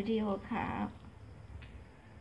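A woman's voice speaking briefly, then a short vocal sound from a Pomeranian about half a second in, over a quiet low background hum.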